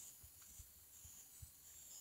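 Near silence, with a few faint low bumps.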